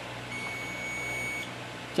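Digital multimeter's continuity buzzer giving one steady high beep of about a second, its probes across a capacitor. The beep stops as the meter's current charges the capacitor and the reading rises: the brief short goes away, so the capacitor is not shorted.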